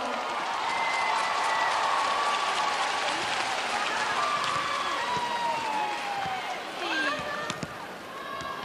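Arena crowd applauding and cheering, a steady wash of noise with voices rising and falling through it; it fades a little near the end.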